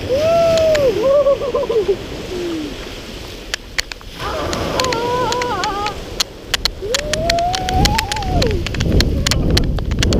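Wind buffeting the microphone with crackling and rumbling, over surf washing onto the beach. Through it come about three drawn-out vocal cries that rise and fall in pitch, the longest one late on, from people wading barefoot in the cold sea.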